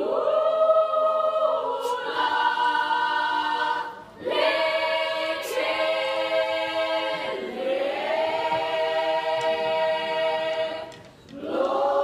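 Youth choir of mainly young women's voices singing a cappella in held chords. Phrases begin right away, break briefly about four seconds in and again near the end, then start again.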